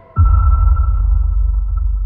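A sudden deep boom, a cinematic trailer impact hit, lands just after the start, leaving a low rumble and a high ringing tone that slowly fade.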